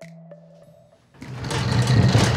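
Faint background music, then about a second in a Ridgid R4331 13-inch thickness planer comes in loud and keeps running.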